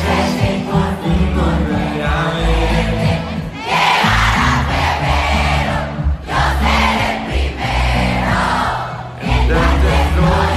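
Live pop music with a steady bass line, and a large concert crowd singing along loudly, loudest a little past the middle.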